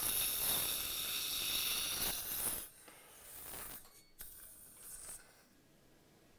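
Surgical implant drill handpiece running under saline irrigation while finishing the implant bed in the jawbone: a steady high whine over a spray hiss that stops about two and a half seconds in. Only faint, scattered sounds follow.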